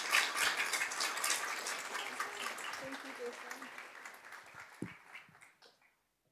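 Audience applause mixed with crowd chatter, fading out over about five seconds.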